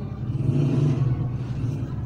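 A motor vehicle's engine running steadily nearby, a low rumble with a faint hiss above it.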